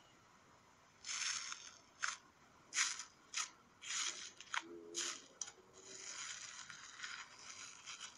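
Bubbly slime being pressed and squished by fingers, giving a string of short crackling pops as its trapped air pockets burst, starting about a second in and becoming a denser, continuous crackle near the end.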